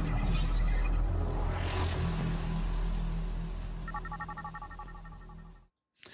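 Intro sting of electronic music and sound design: a deep, steady bass rumble with a rising whoosh about two seconds in, gradually fading, with a run of pulsing high tones near the end before it cuts off suddenly.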